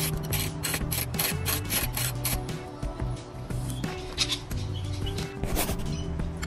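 Ratchet wrench on a long extension clicking in quick runs as it is worked back and forth to loosen a belt tensioner adjust bolt, over background music.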